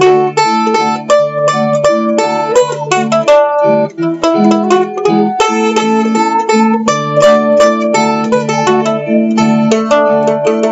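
Weber Y2K A-style mandolin strummed in a steady rhythm, playing a song with the chord changing every second or so.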